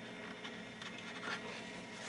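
Faint rubbing and scratching of an isopropyl-alcohol-soaked paper towel wiping heat sink compound off the top of a chip.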